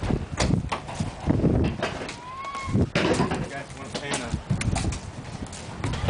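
Footsteps crunching on gravel at a walking pace, with indistinct voices and a brief rising tone about two seconds in.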